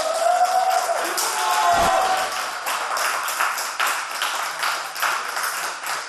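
A small group of people clapping, with drawn-out cheering voices in the first second or so.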